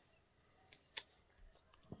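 Near silence broken by a few faint clicks and ticks, the clearest just before one second in: hands handling and pressing down glued paper on a cutting mat.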